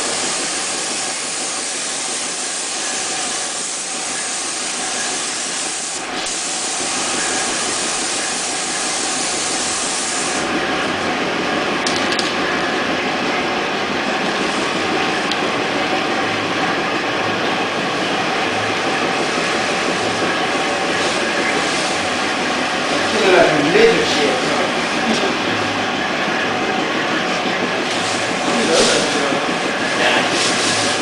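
Steady hiss of compressed air from an automotive paint spray gun, which stops about ten seconds in, leaving a steady lower machine and air noise underneath.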